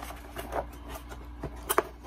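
Cardboard packaging being handled and set down: light rustling and soft clicks, with one sharper tap near the end.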